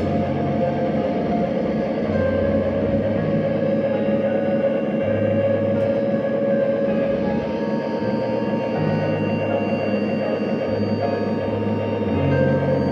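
Emo band playing live: a slow, sustained passage of ringing electric guitar over a bass line that moves to a new note every second or two.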